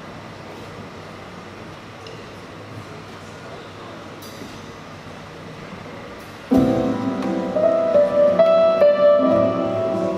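Low steady room noise, then about six and a half seconds in a live band starts playing with loud ringing chords and notes that keep changing above them.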